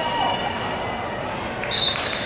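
Spectators shouting and cheering, then a referee's whistle blown near the end in one steady, shrill blast, signalling the play dead after the tackle.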